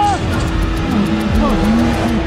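A man crying out in pain as he breaks his femur in a ski crash. A high, held cry breaks off just after the start, followed by lower, wavering vocal sounds, over background music with a steady low note.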